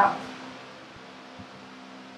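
Electric fan running steadily: a constant airy hiss with a low hum. A small soft knock comes about one and a half seconds in.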